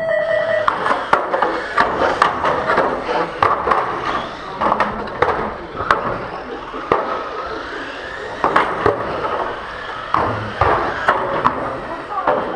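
1/12-scale electric GT12 pan cars racing on a carpet track: a dense clatter of small wheels and motors, broken by many sharp knocks and clicks, after a short electronic beep at the very start.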